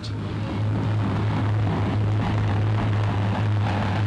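Bluebird II racing speed boat's engine running flat out on a high-speed run, a steady rough drone with hiss on an old newsreel soundtrack, over a constant low hum.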